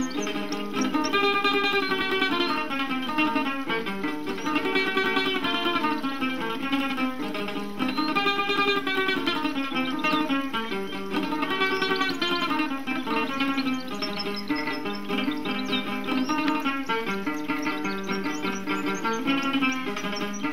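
Jaranas, small folk guitars, playing a son together: quick plucked and strummed notes in phrases that rise and fall every few seconds.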